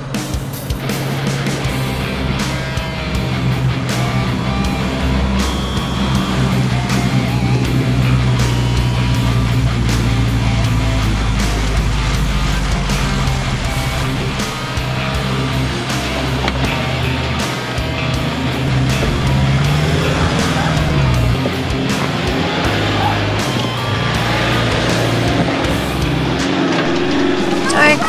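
Background music laid over a four-wheel drive's engine working slowly through rough off-road ruts. The engine note rises briefly about two-thirds of the way in.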